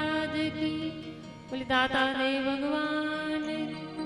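A woman singing a Hindi devotional bhajan into a microphone, drawing out long held notes, with a short breath-like pause about one and a half seconds in before the next phrase begins.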